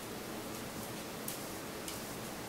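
Steady background hiss of a small room, with a few faint, brief rustles.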